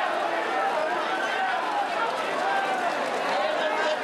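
Continuous voices at a horse race, several talking at once without a break, as racehorses gallop past the finish on turf.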